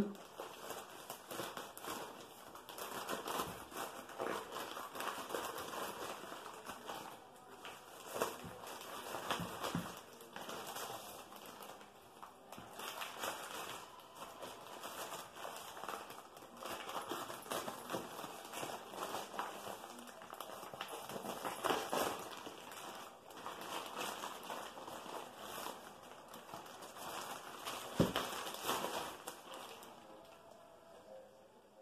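Plastic mailer bag crinkling and rustling as it is handled and pulled at, with a sharper rip near the end as the bag is torn open.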